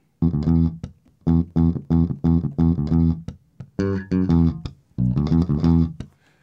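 A sampled bass line played back in the MPC software: short, clipped low bass notes in choppy phrases, broken by brief pauses about a second in, midway and near the end.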